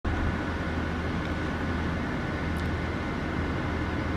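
Steady low mechanical hum under an even wash of noise, unchanging throughout: outdoor urban background sound.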